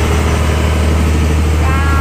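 A boat's engine running at a steady, unchanging pitch while the boat is under way, with a low hum and the sea wash along the hull.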